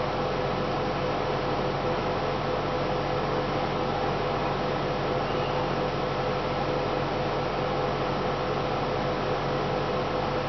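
Steady background hiss with a low hum and a faint constant tone, unchanging throughout, like a fan or air conditioner running in a small room.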